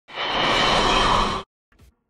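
A short burst of intro music from a channel logo sting, dense with many tones, that stops abruptly about a second and a half in.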